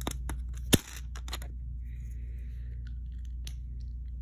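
Small plastic clicks as a brick separator pries a plate off a knock-off Lego baseplate, with one sharp snap about three quarters of a second in. A low steady hum runs underneath.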